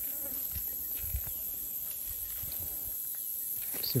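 Insects in dry scrub buzzing in a high, steady drone, with a few faint low thuds and brush rustling.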